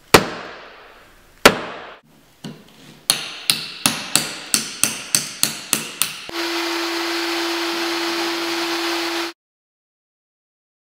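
Hammer striking a nail set to countersink nails into wooden floorboards: three separate strikes, then a run of about eleven quick taps, about three a second. Then a steady motor hum with hiss starts and cuts off abruptly about three seconds later.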